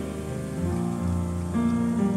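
Live jazz: grand piano and upright double bass sound held, sustained notes in a quiet passage, over a soft, steady hiss.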